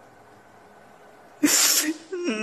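A man crying: after a quiet pause, one loud, sharp gasping sob about a second and a half in.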